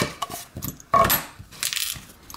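A plastic pinning tray being set down on a rubber bench mat and a small padlock moved onto it: a few short knocks and clatters, the loudest about a second in.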